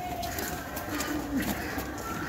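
Bird calls, low-pitched, over faint background voices.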